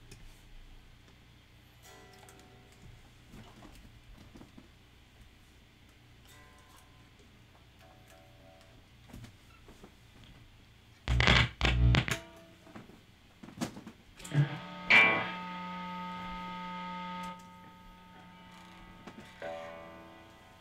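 Electric guitar played through a distorted amp sound: a few faint short notes, then a cluster of loud low thumps, then a chord struck and held for about two seconds before it is muted, with more notes near the end.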